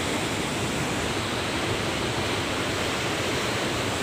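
The Alaknanda, a glacial Himalayan river, rushing in white-water rapids over boulders: a steady, even noise of churning water.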